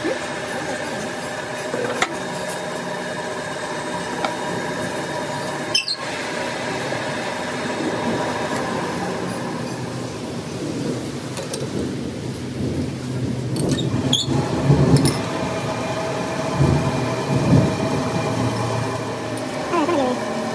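Metal lathe running with a large four-jaw chuck spinning a truck axle shaft, set against a wire pointer to check how true it runs: a steady machine hum of several tones. A few sharp clicks, and a louder, rougher stretch in the second half.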